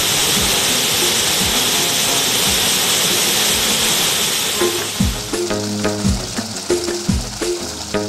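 Waterfall rushing into a pool, mixed with background music that has a steady beat. The water sound fades out about five seconds in, leaving only the music.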